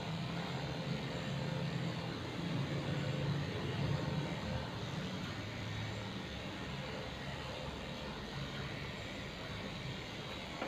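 Electric dog clippers with a number 7 blade running steadily while shaving a Shih Tzu's coat.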